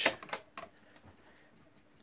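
A few quick hard-plastic clicks from a hand handling a GPO 746 telephone's handset and case, the first the loudest, then faint room tone.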